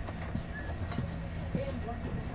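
Cabin ambience of a commuter train standing at a station: a steady low hum from the train, faint voices, and a few hard knocks like footsteps on a hard floor.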